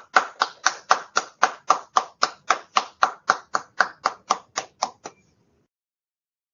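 Steady hand clapping over a video call, about four claps a second, stopping about five seconds in.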